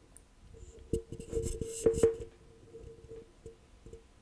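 Fabric being folded and pinned by hand on a cutting table: rustling and light clicks, bunched about one to two seconds in and loudest near two seconds, over a faint steady tone.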